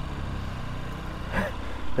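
Motorcycle engine idling with a steady low hum.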